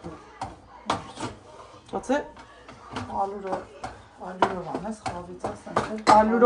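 Wooden spoon knocking and scraping against a frying pan as thick, crumbly semolina halva is stirred, in a scatter of sharp taps. Voices talk quietly alongside.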